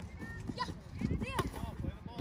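Soccer players running on grass with repeated footfall thuds, and high-pitched shouts from players and spectators. A single sharp knock about a second and a half in, from a ball kick or a challenge.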